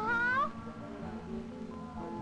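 A child's high-pitched voice rising in pitch and breaking off about half a second in, followed by soft background music with long held notes.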